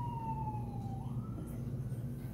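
A woman's voice holding one high sung note that slides slowly down in pitch and fades out about a second in, over a steady low electrical hum.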